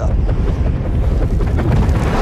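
Film sound effect of a caped hero taking off into the air: a sudden, loud rushing whoosh over a deep rumble, lasting about two seconds.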